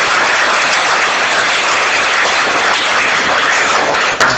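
Audience applauding, a dense and steady clapping.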